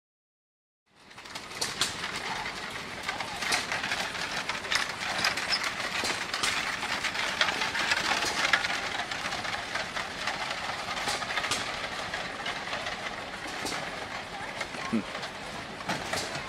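Horse-drawn stagecoach rolling by on gravel: wooden-spoked wheels crunching and a pair of draft horses' hooves clopping, with many sharp clicks over a steady rumble and people's voices behind. The sound begins about a second in.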